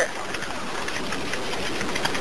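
Steady hiss and static on a recorded 911 telephone call, in a pause between the caller and the dispatcher.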